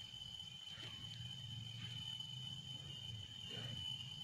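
Quiet outdoor ambience: an insect's steady high-pitched drone over a faint low rumble.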